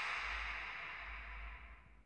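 The advert's background music dies away, fading steadily over about two seconds to a faint tail.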